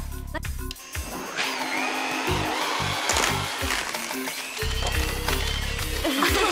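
Electric hand mixer whirring in a mixing bowl, starting about a second and a half in, over background comedy music with a steady bass beat.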